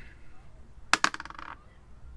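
A small picture die tossed onto a plate, landing with a sharp click about a second in and clattering briefly as it tumbles to a stop.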